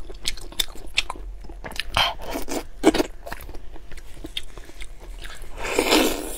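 Close-miked eating: a person biting into and chewing a soft piece of sauce-covered meat, with many small mouth clicks and a few louder bites.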